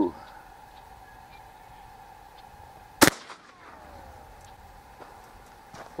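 A single 12-gauge shotgun shot about halfway through, firing a motor-commutator slug at high power, followed by a faint falling tone.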